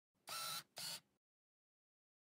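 Two short, bright bursts of a logo-intro sound effect, the second shorter and following close after the first about a second in.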